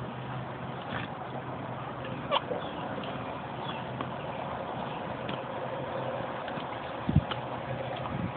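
Pool water lapping and splashing around an inflatable baby float as it is moved through the water, with a few faint clicks and one short low thump about seven seconds in.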